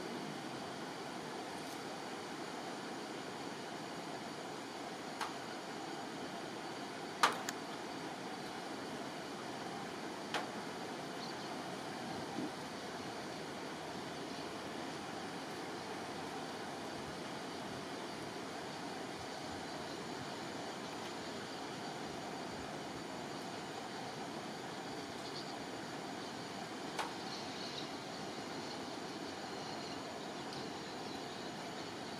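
Steady outdoor background hiss, broken by a handful of short sharp clicks or snaps, the loudest about seven seconds in.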